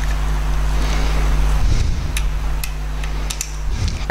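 Steady electrical mains hum over a hiss, with a few light clicks from crocodile clips being fastened to the rheostat terminals during circuit wiring.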